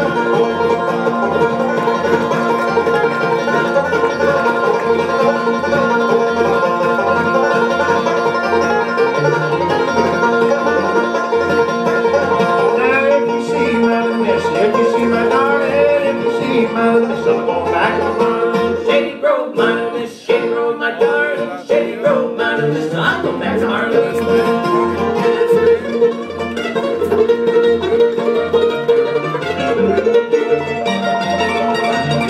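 Live bluegrass band playing a tune on banjo, mandolin, acoustic guitar and upright bass, the bass keeping a steady beat. The sound drops briefly about twenty seconds in.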